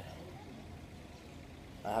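Faint, steady outdoor background noise with a low rumble in a pause between a man's sentences; a man's voice starts again near the end.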